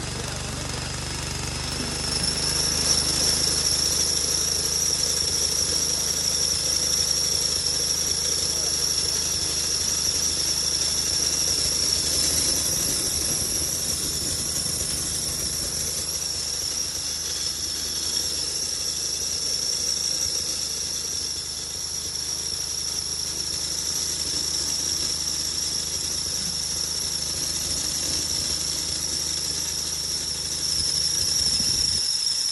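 Small motor-driven chili powder grinder running under load as dried chili is milled to powder, with a steady high-pitched whine. It grows louder about two seconds in and then runs on evenly.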